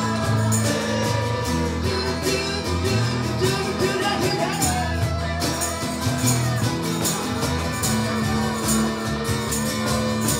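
Live band playing: strummed acoustic and electric guitars over a steady cajon beat, with a melodic guitar line wavering in pitch about four to five seconds in.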